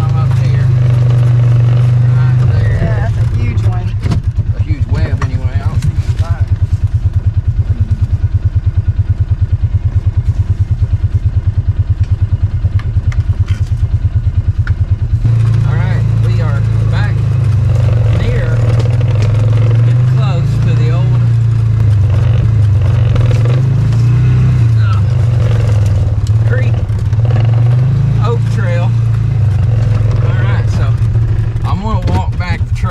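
Polaris 500 Crew side-by-side's engine running steadily as it drives along a wooded trail. For a stretch early on the engine note turns into a fast, even throb, then about halfway through it goes back to a steadier drone that rises and falls a little with the throttle.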